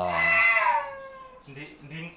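A young child's drawn-out whining cry, rising and then falling in pitch over about a second and a half.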